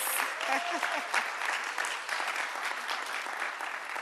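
A roomful of people applauding steadily, with a faint voice over it in about the first second.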